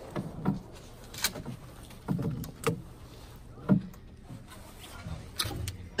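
Scattered light clicks and knocks of a shotgun being handled and loaded at a wooden shooting bench, some with a dull thud.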